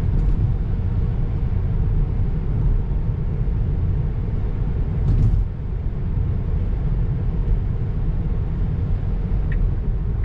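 Steady low road and tyre rumble with wind noise inside the cabin of a 2023 Tesla Model 3 RWD at highway speed. Being electric, it has no engine sound. There is a brief louder noise about five seconds in and a few faint ticks near the end.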